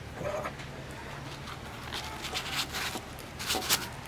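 Fabric and nylon rustling and scraping as a flashlight is pushed into the elastic loop of a cloth EDC organiser pouch, in a few short bursts in the second half.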